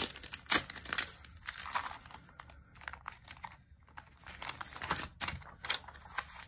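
Crinkling and rustling of a plastic-sleeved pack of origami paper and its sheets as paper is taken out, in irregular bursts, loudest at the start and about half a second in, thinning out midway.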